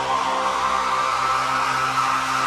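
Progressive psy-trance electronic music: sustained synth tones over a steady bass note, with a hissing noise layer and no clear beat.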